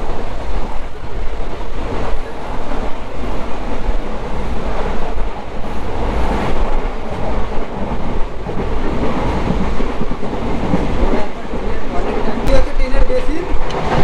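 Inside an Indian Railways sleeper-class coach on the move: the steady low rumble and rattle of the running train, with passengers' voices in the background.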